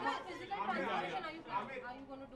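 Several voices talking over one another: reporters' chatter in a large room.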